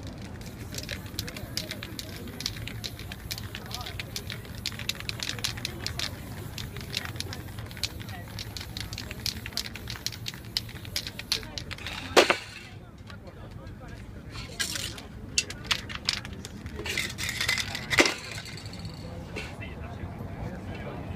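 Aerosol spray-paint cans hissing in short bursts among a run of fine crackling clicks, with a sharp loud click a little past halfway and another near the end.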